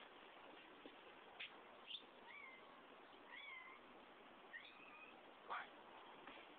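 Faint animal calls: three short, high, rising-and-falling cries, with a few sharp clicks between them.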